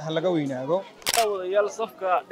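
Men speaking in Somali, with one short sharp click about halfway through.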